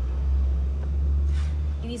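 A steady low rumble that drops away near the end, as a woman's voice begins.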